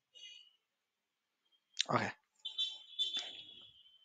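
A faint, steady high-pitched whine that drops out for about two seconds and then returns, with a single spoken "okay" in the gap.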